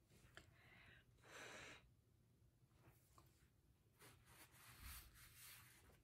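Near silence: room tone with a low hum and a few brief, faint noises.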